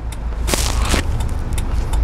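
Steady engine and road rumble inside the cab of a moving Kia small truck, with a short hiss about half a second in.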